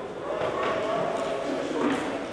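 Men's voices calling out in a large, echoing hall, with a few sharp thuds from boxing gloves and footwork on the ring canvas.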